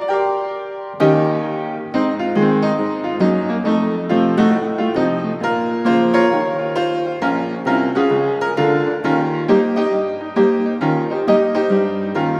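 Background piano music: a held note, then from about a second in a steady flow of struck notes and chords.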